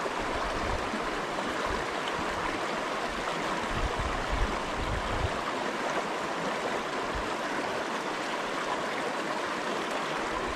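A small stream rushing steadily over rocks in a shallow riffle, with a few brief low rumbles around the middle.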